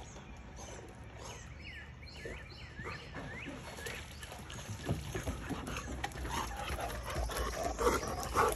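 German Shorthaired Pointer whining in a quick run of about six short high notes while it swims to the pool step and climbs out. Busier splashing and dripping of water follow as it comes onto the deck.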